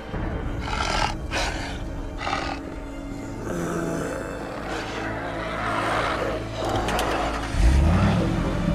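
A wolf-like monster's roar in three short bursts over a dramatic music score, with a car engine rising and a loud low swell near the end.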